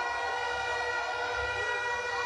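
A steady held tone sounding several pitches at once, unbroken and even in level, with no speech over it.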